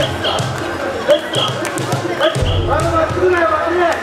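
Mikoshi bearers chanting together in rhythm as they carry the portable shrine, with short high whistle blasts cutting in about once a second.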